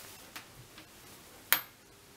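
A few faint taps, then a sharp click with a brief high ring about one and a half seconds in, as a hand takes hold of a small altazimuth telescope's tube and slow-motion control.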